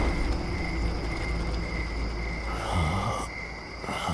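Crickets chirping steadily in a night-time ambience over a low rumble, with a brief swell of noise about three quarters of the way through.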